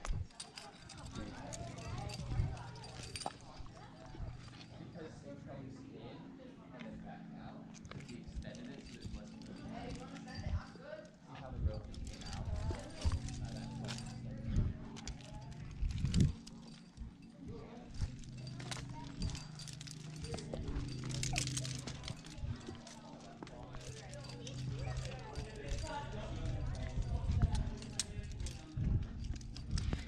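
Metal climbing gear, carabiners and cams on a harness rack, clinking and knocking irregularly as a climber moves up rock, mixed with scuffs and scrapes of hands and shoes on the rock.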